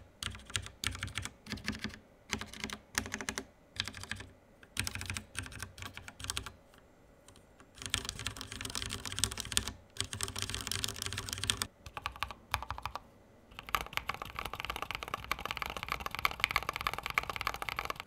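Typing on a Ducky One 2 Mini mechanical keyboard with Cherry MX Red linear switches: keystrokes come in short bursts with gaps, a brief pause near the middle, then fast continuous typing toward the end.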